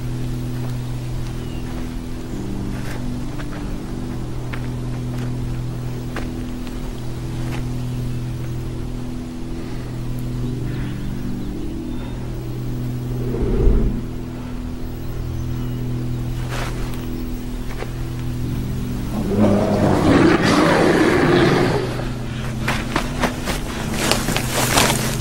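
Film score: a suspenseful drone of sustained low tones. A single sudden low hit comes about halfway through, and a louder rough, noisy swell lasts a couple of seconds toward the end.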